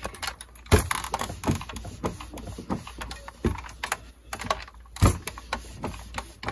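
Hands handling folded cotton fabric and a clothes iron being brought down to press it: irregular light taps and clicks, with two heavier thumps about a second in and near the end.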